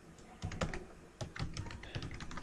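Computer keyboard keystrokes: a run of short, separate key clicks, starting about half a second in.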